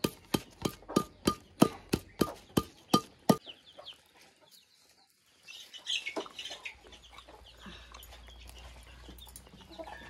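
Metal pipe pounding a leaf-wrapped bundle on a hard earthen floor, about three dull blows a second, stopping about three and a half seconds in. A few fainter clucks from a chicken follow.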